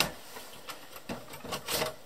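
Allen-Bradley ControlLogix power supply being worked loose from a 1756-A10 chassis: light clicks of its housing rubbing against the chassis, then a louder scrape near the end as it slides free.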